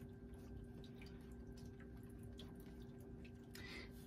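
Faint light taps and rustles of round cardboard fortune cards being set down and slid into a row on a cloth-covered table, over a steady low hum.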